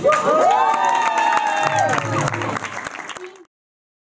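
Audience applauding and cheering, with several voices whooping, at the end of a dance number. The sound cuts off abruptly about three and a half seconds in.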